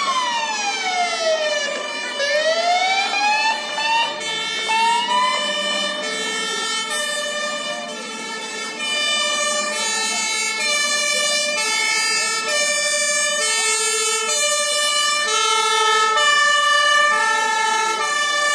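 Fire engine siren sounding loudly. For the first five seconds it slides down in pitch and back up in a slow wail. It then switches to an alternating two-tone high-low pattern that runs on.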